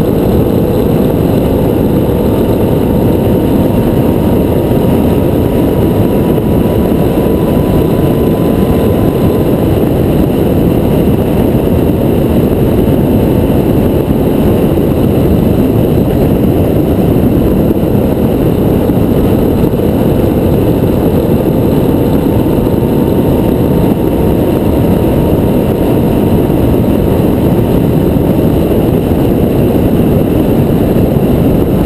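Motorcycle cruising at a steady speed: the engine's drone, with a faint hum that drifts slowly in pitch, under loud wind rushing over the camera microphone.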